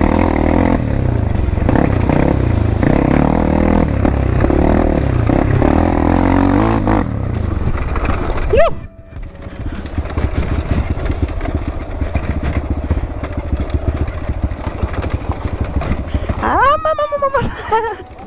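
Dirt bike engine running under throttle for about seven seconds, then dropping to a lower note mixed with clatter as the bike rolls over rocks downhill. There is a short rising sound and a sudden dip in level about eight and a half seconds in.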